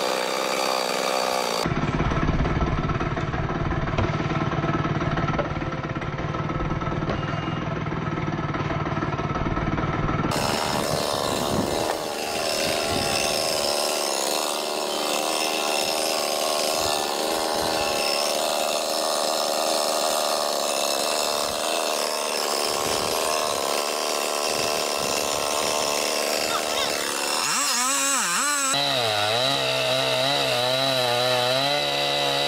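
Gas chainsaw running steadily, its pitch wavering up and down near the end as the throttle is worked against a dead tree's trunk.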